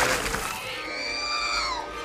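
Film sound effect of an X-wing starfighter crash-landing in a swamp: a rush of splashing noise that fades over the first second, then a whine that slowly falls in pitch.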